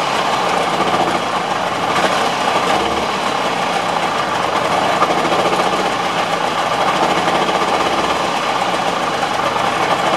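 Subaru 360's air-cooled two-stroke twin-cylinder engine running steadily while the car stands still.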